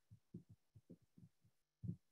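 Near silence broken by several faint, soft low thumps at irregular intervals, the strongest just before the end, over a faint steady hum.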